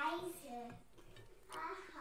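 Speech: a voice saying two short phrases, one at the start and one near the end, with a quieter pause between.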